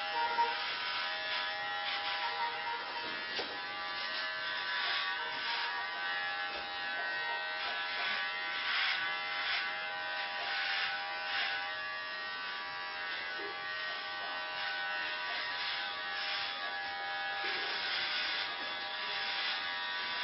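Electric hair clippers buzzing steadily while cutting a woman's hair close to the scalp.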